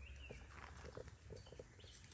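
Near silence: faint outdoor background with a low hum and a few soft, scattered ticks.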